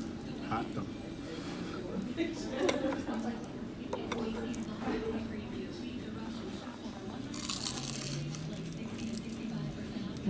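A crunchy fried egg roll being bitten and chewed, with a sharp crisp crackle near the end, over faint background voices.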